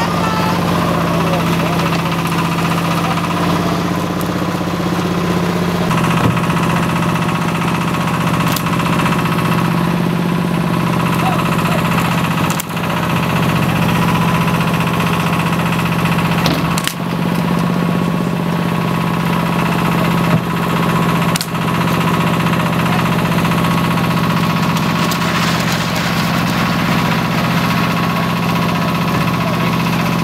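An engine running steadily with an even low hum, probably driving the hoist that lifts fish crates off the boat, with a few sharp knocks along the way.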